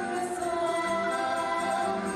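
Women singing into microphones, several voices together over a musical backing, the sung notes held and gliding.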